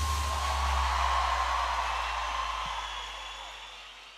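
The live band's final note ringing out over a large concert crowd's cheering, the whole sound fading out steadily.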